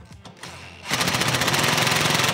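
DeWalt cordless impact driver running a clamp bolt snug, a rapid hammering rattle that starts about a second in. The bolt is only being brought to light tension.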